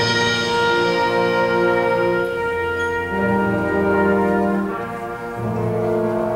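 High school concert band playing sustained chords, with the brass to the fore. The chord changes about three seconds in and again near the end, with a slight easing around five seconds.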